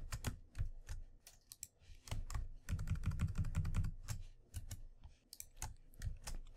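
Typing on a computer keyboard: irregular single key clicks, with a quicker run of keystrokes from about two and a half to four seconds in.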